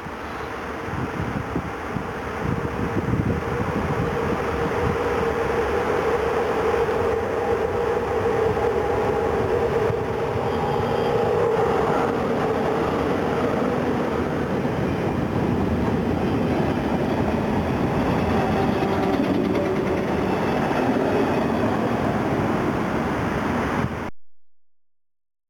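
Train passing close by: an electric locomotive hauling a string of electric multiple-unit cars. The rumble builds over the first few seconds as it nears, then settles into a steady, loud rolling sound of wheels on rail, with a humming tone through the first half.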